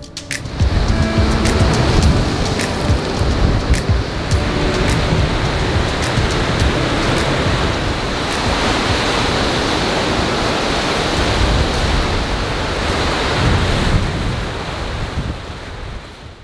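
Rough lake surf crashing against a rocky shore, a dense steady wash of noise, with music underneath. The sound fades out near the end.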